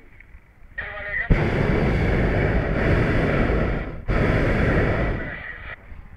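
Hot air balloon's propane burner firing in two long blasts close by: a loud, even roar of about three seconds, a split-second break, then under two seconds more, each starting and stopping abruptly.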